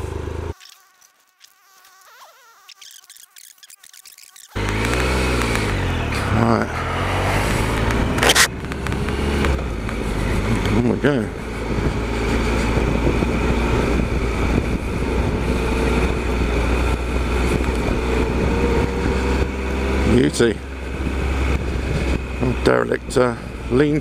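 Triumph Explorer XCa's three-cylinder engine riding a grassy farm track. After a quiet first few seconds it comes in loud, its pitch rising and falling as the bike pulls away, then runs as a steady drone, with a sharp knock about eight seconds in.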